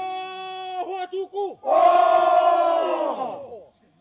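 Group of men's voices singing in unison without the sounding-board beat: a held note, a few short broken notes, then a loud, long shouted note that slides down in pitch and fades out near the end.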